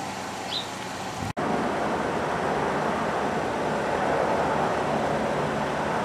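Steady outdoor background noise of road traffic, broken by a momentary drop to silence a little over a second in, after which it runs on somewhat louder.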